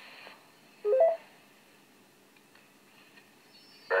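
Amateur radio repeater courtesy tone from a Yaesu FT-817's speaker: a short beep that rises in steps, lasting about a third of a second, about a second in. It marks the end of one station's transmission and that the channel is clear for the next. The receiver is otherwise near quiet.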